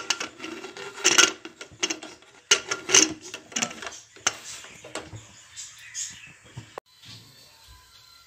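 Aluminium pressure cooker lid being fitted and twisted shut: a quick run of metal clicks, scrapes and knocks for about four seconds, then fainter handling.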